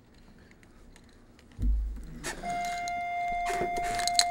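A low thump on the desk microphone about one and a half seconds in, then a steady high-pitched tone that holds without change, with a few clicks and rustles of handling near the end.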